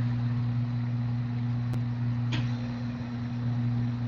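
Steady low electrical hum on the audio line over a faint hiss, with a faint click a little over two seconds in.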